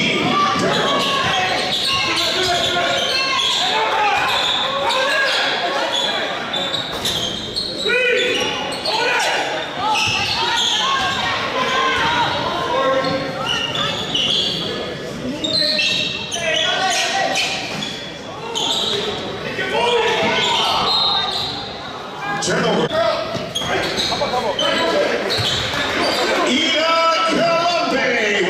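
Basketball bouncing on a hardwood gym floor during play, amid indistinct voices of players and spectators, echoing in a large gymnasium.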